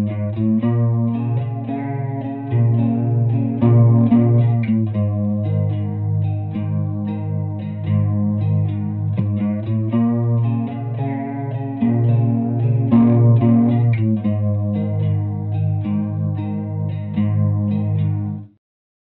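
Electric guitar (a Fender Stratocaster) playing a riff, lightly overdriven and with a lush chorus effect, heard through a tube amp and a cabinet impulse response.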